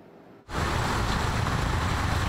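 Loud, steady rushing of water pouring from a burst water main and flowing down a street, with a heavy low rumble. It starts suddenly about half a second in.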